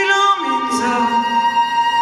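A woman singing in Hebrew with a live band of piano, drums, oud and strings, holding long notes and sliding between them in pitch.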